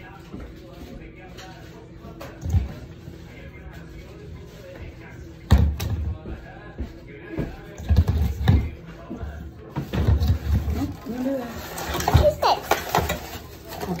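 A child's voice with scattered knocks and thumps from a stainless steel mixing bowl being handled on a counter; the loudest knocks come about five and a half seconds in and around eight seconds.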